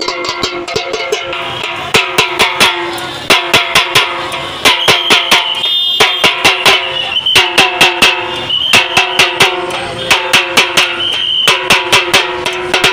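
Small double-headed drum slung at the waist, beaten with two sticks in fast repeating clusters of strokes, the drumheads ringing with a steady pitch between strokes.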